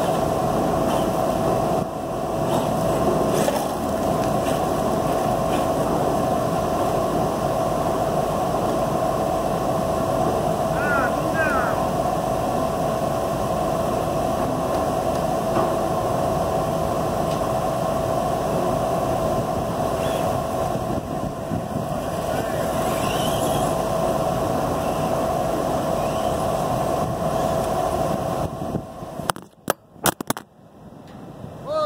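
Steady machinery hum with a constant mid-pitched tone over wind and outdoor noise, with two brief rising whines. Near the end there are a few sharp knocks and the sound suddenly drops away as the wind blows the phone over.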